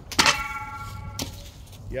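A thrown Cold Steel BMFDS steel shovel strikes hard with a loud clank, its steel blade ringing for about a second. A second, shorter knock follows about a second later.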